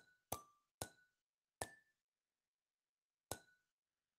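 Wordwall spin-the-wheel sound effect: short pinging ticks as the on-screen wheel passes each segment, coming farther and farther apart as the wheel slows down. Four pings, the last a little over three seconds in.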